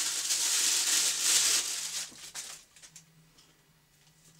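Plastic packaging crinkling as a camera lens is unwrapped. The rustle is steady for about two seconds, then thins to a few light handling clicks.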